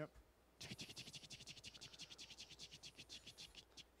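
Prize wheel spinning, its rim pegs flicking past the pointer in a fast run of faint ticks that slows as the wheel coasts down and stops shortly before the end.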